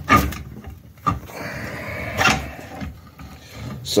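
Aluminium crankcase halves of a Honda TRX400EX bottom end knocking and scraping against each other as the right case half is worked loose and lifted off the left half. There are three sharp knocks about a second apart, with a rubbing scrape between them.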